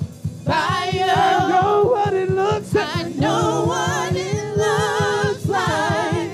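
Gospel worship team singing in harmony, holding long notes with vibrato, over a low steady beat.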